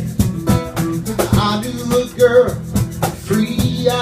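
A live acoustic band playing: strummed acoustic guitar with electric guitar, bass guitar and hand percussion keeping a steady beat.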